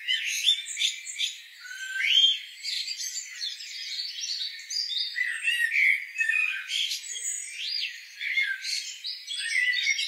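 Several songbirds singing together: a busy chorus of overlapping chirps, short trills and whistles, all high-pitched with no low sound under them.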